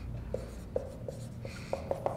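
Marker writing on a whiteboard, with about half a dozen short squeaks of the felt tip as a word is written.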